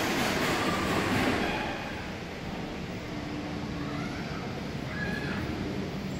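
ATL SkyTrain automated people mover pulling away from the station, its running noise fading over the first two seconds and leaving a lower steady hum, heard through the closed glass platform doors.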